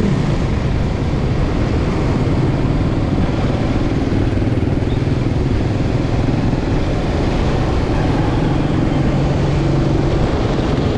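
Motorcycle engine running steadily as the bike rides slowly through traffic, under a constant rush of wind and road noise on the camera microphone.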